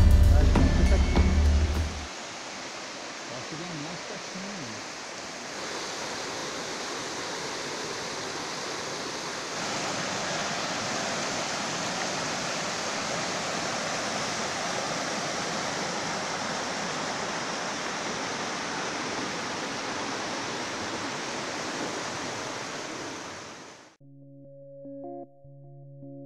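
Shallow rocky stream running over stones: a steady rushing of water that follows music ending about two seconds in. It grows louder in two steps, about five and ten seconds in, where the water breaks into small white-water cascades.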